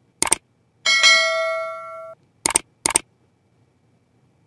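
Subscribe-reminder sound effect: two sharp clicks, then a bell ding that rings for about a second and cuts off suddenly, then two more clicks.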